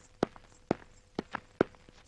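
Footsteps on a hard floor: about five short steps, roughly two a second.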